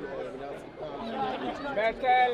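People talking: several overlapping voices chattering, with one voice louder near the end.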